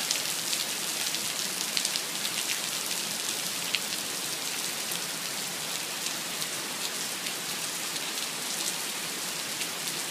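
Heavy rain falling steadily on asphalt and parked cars: a dense, even hiss with scattered sharp drop hits close by.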